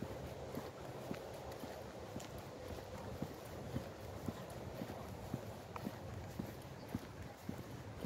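Footsteps on an asphalt path, about two steps a second, heard over a steady low background noise.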